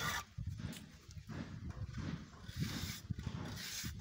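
Steel trowel scraping and tapping on fresh cement mortar while the edge of a concrete cap is being shaped, an irregular run of short scrapes and knocks.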